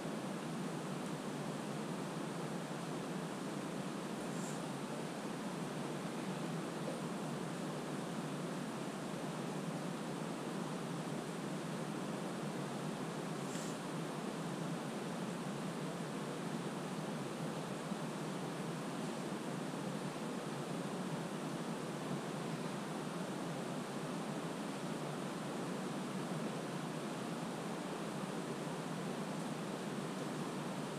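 A steady, even hiss, with two faint ticks, one about four seconds in and one about fourteen seconds in.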